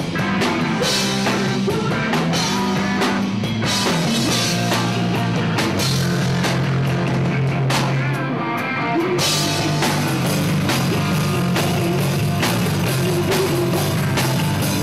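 Live rock band playing loudly: drum kit, electric guitar and bass guitar, with a woman singing. The cymbals drop out for about a second midway.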